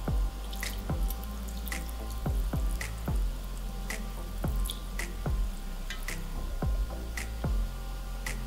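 Fish broth trickling from a saucepan through cheesecloth into a sieve, over background music with a steady beat of about two strokes a second.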